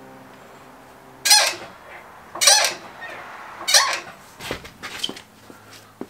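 A Craftsman two-ton hydraulic floor jack being pumped to lift the truck's front corner: three squeaky handle strokes about a second apart, then two weaker ones.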